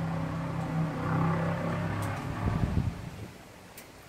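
A car going by with its engine driven hard, "hot rodded": a low steady engine drone that swells briefly and then dies away about three seconds in.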